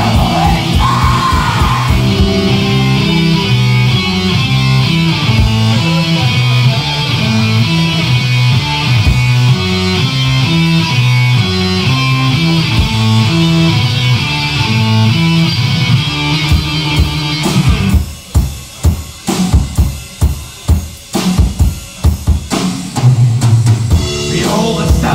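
Black metal band playing live, heard on a raw bootleg recording: a distorted guitar riff over stepping bass notes and drums. About three quarters of the way through, the band switches to sharp stop-start hits with short gaps between them, then comes back in with full playing near the end.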